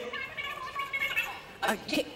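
A person's voice: a faint, drawn-out vocal sound, then a man's short "uh" near the end.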